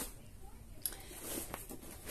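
Faint handling noises from an exercise mat being shifted and laid down, with a light tap a little under halfway through and a few soft scuffs after it.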